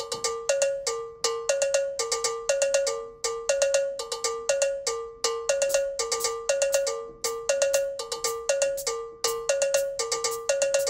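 Cowbell-like synthesizer notes played on a keyboard: short, bright, quickly decaying notes in a steady repeating pattern that alternates between two pitches.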